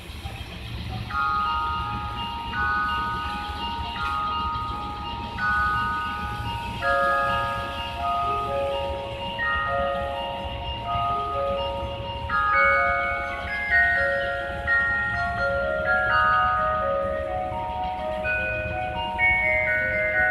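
Station departure melody played over the platform loudspeakers: a chiming glockenspiel-like tune that starts about a second in. It signals that the train is about to leave and the doors will close.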